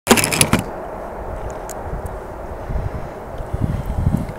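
Handling noise from a hand on the camera as it starts recording: loud crackling knocks for about half a second, then a steady low rumble with a few faint ticks.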